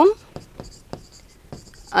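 Writing on a green board, heard as a series of short scratches and taps as the strokes of a word go down.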